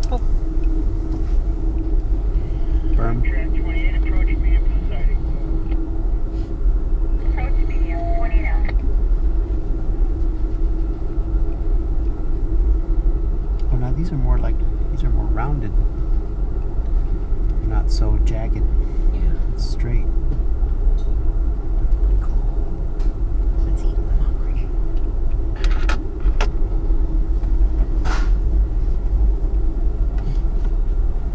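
Steady low rumble of an Amtrak passenger train car rolling along the track, heard inside the car, with a constant hum, scattered clicks and rattles, and faint voices of passengers.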